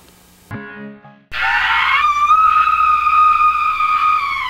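A woman's long, high-pitched scream that rises in pitch and is then held steady for nearly three seconds, after a short low sound about half a second in.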